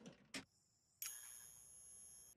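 Faint film soundtrack: a single sharp click, then about a second in a steady high-pitched ringing tone that starts suddenly and holds.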